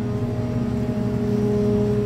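Steady machine hum: a continuous low rumble with a couple of constant tones held throughout.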